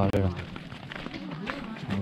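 A man's loud, long-held call ends just after the start, then footsteps crunch on a loose stony dirt trail under faint voices. Another long call begins right at the end.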